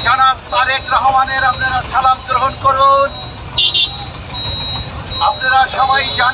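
A man speaking in Bengali through a handheld megaphone, his voice thin and tinny, with a faint steady high tone under it. He pauses about three seconds in, when a short high-pitched sound is heard, and resumes near the end.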